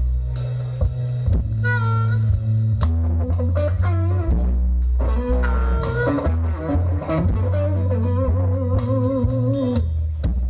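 Live blues band playing an instrumental passage: electric guitar, bass guitar, drum kit and a harmonica played into the microphone, loud and steady. A lead line of bent notes waves in pitch near the end.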